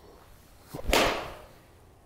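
Edel 54° steel wedge striking a golf ball off a hitting mat: one sharp, loud strike about a second in, dying away quickly.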